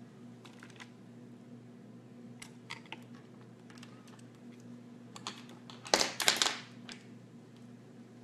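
Scattered light taps and clicks of hands handling things close to the microphone, with a louder cluster of knocks about six seconds in, over a steady low hum.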